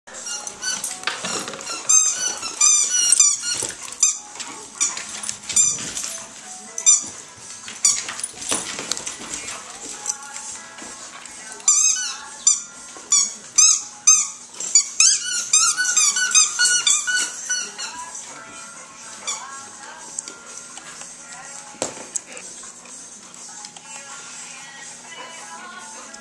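Dogs whining in short, high, repeated squeals, in two spells, one near the start and one around the middle, over background music.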